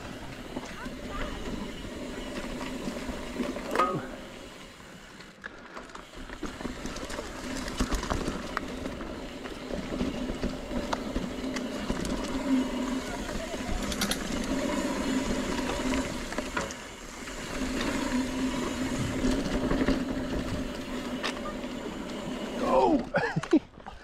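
Mountain bike rolling along a dirt trail: tyre and wind noise with a steady hum that swells and fades, and a few sharp knocks and rattles from the bike. A short burst of voice comes in near the end.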